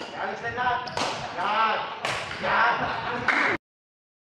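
Badminton rackets striking a shuttlecock during a rally: three sharp cracks about a second apart, with people's voices between them. The sound cuts off abruptly near the end.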